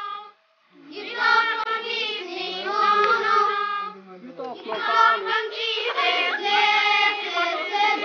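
A group of children singing together, starting about a second in, in two phrases with a short break about halfway through.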